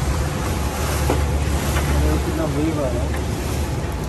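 Small open tour boat under way on fast, churning river water: a steady low motor rumble under the hiss and rush of the water, with wind on the microphone.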